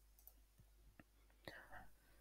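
Near silence: a pause in the speech, with a couple of faint clicks.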